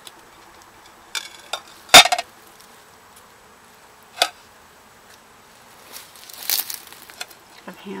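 Old china plates being handled among debris: a few sharp ceramic clinks, the loudest about two seconds in and another about four seconds in, then scraping and rattling around six to seven seconds. A faint steady buzz runs underneath.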